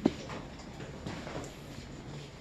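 A single short knock, then quiet room tone.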